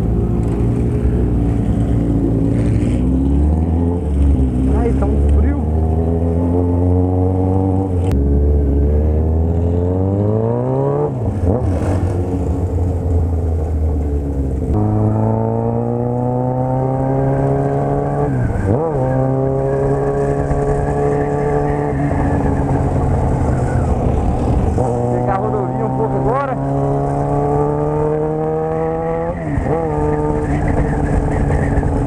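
A Yamaha XJ6's inline-four engine heard from the rider's seat, pulling up through the gears. Its pitch climbs and then drops sharply at each upshift, about five times, with steadier cruising stretches between.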